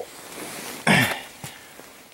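A man clears his throat once, about a second in, a short harsh sound that falls in pitch.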